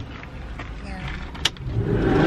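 Minivan front passenger door unlatching with a sharp click about one and a half seconds in, then starting to open, over the low noise of the van's cabin.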